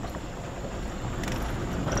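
Steady road noise inside a moving pickup truck's cab: the engine and tyres run on evenly while the truck drives along.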